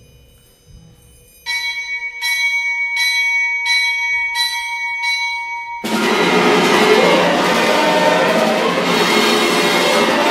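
Symphony orchestra. A faint ringing tone hangs at first. From about a second and a half in, a bell-like tuned percussion chord is struck about six times, evenly spaced, and then the full orchestra with brass comes in loudly about six seconds in.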